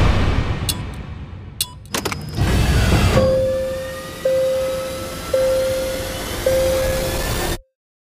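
Trailer sound design: a heavy hit, a few sharp clicks, then a rising whooshing swell with a single steady tone pulsing about once a second. It cuts off suddenly to silence near the end.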